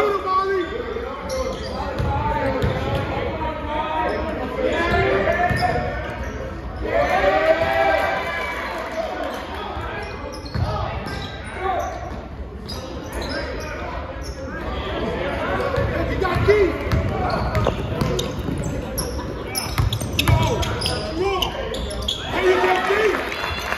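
Basketball game in a large gym: a ball bouncing repeatedly on the court, under voices calling out from players and spectators.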